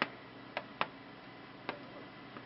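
Light, sharp taps at uneven intervals, about four in two seconds: the stylus of a Glo Doodle light-drawing board touching down on its plastic screen as letters are written.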